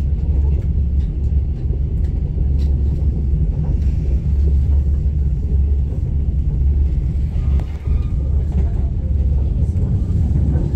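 Passenger train running steadily, heard from inside the carriage: a continuous deep rumble from the running gear and track, with faint clicks and rattles over it.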